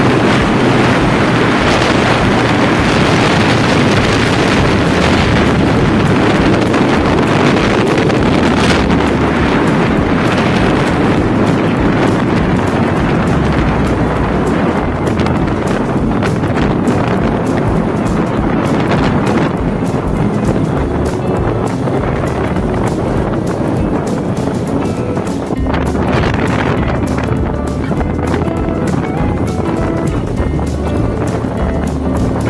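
Wind buffeting a phone microphone on a moving motorcycle, a loud steady rush, with background music under it.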